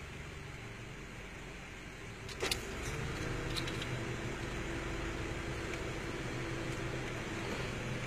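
Inside a car, a sharp click about two and a half seconds in, followed by a steady hum that sets in and holds for the rest of the time, as of a motor in the car switched on.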